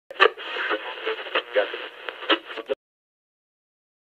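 A person's voice heard through a narrow, tinny, radio-like band, cutting off suddenly a little under three seconds in.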